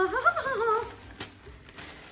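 A brief wordless vocal sound in the first second, then a thin plastic shopping bag crinkling and rustling as hands rummage through it, with one sharp click.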